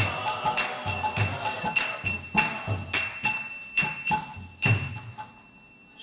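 Kirtan hand cymbals (karatalas) struck about three times a second with long bright ringing, with low drum beats under them, closing the chant: the strokes thin out and ring away about five seconds in.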